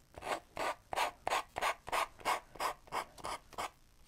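Emery board sanding the edge of paper glued onto a wooden cutout, in short quick strokes about three a second that stop shortly before the end. Each down-and-away stroke tears off the overhanging paper, leaving a clean edge.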